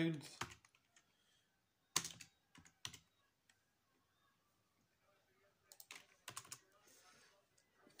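A few short, sharp clicks: a single one about two seconds in, a couple shortly after, and a small cluster around six seconds, with near silence between them.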